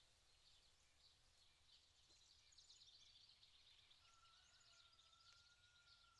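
Near silence: only very faint background tone.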